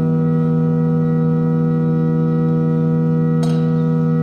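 Pipe organ holding one sustained chord steadily, with a faint click near the end.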